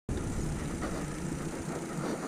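Wind buffeting the microphone of a handlebar-mounted action camera on a moving bicycle, a steady low rumble that starts abruptly just after the opening.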